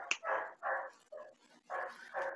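A dog barking, several short barks in a row, faint and heard over a video call.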